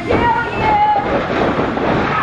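Wrestling crowd yelling and cheering, a dense steady din with a couple of drawn-out high shouts standing out.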